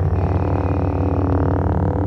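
Lightsaber hum from Star Wars: a steady, buzzing electric hum carrying on just after a blade has been ignited.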